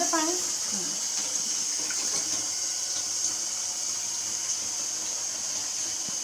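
Water running into a kitchen sink, a steady hiss, with a short stretch of a voice at the very start.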